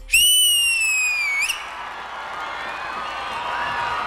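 A loud, high whistle held for about a second and a half, its pitch sagging slightly before a quick upward flick as it stops. It is followed by audience cheering and applause with faint whistles.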